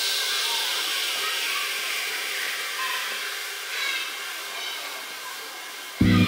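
Tech house music in a breakdown with the kick and bass gone: a hissing white-noise sweep slides down in pitch and fades over thin high synth parts. The heavy kick drum returns right at the end.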